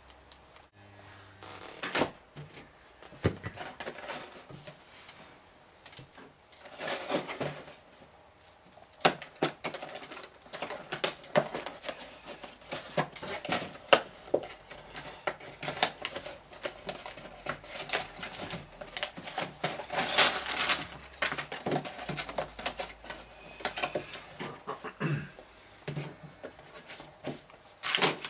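Small cardboard box being opened and handled: the flap torn and pulled open and the box turned about, with many irregular clicks, scrapes and rustles as the bagged bricks and instruction manual come out.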